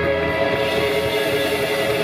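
A live electric band holding a loud sustained chord: electric guitars and bass ring steadily together over a wash of cymbals.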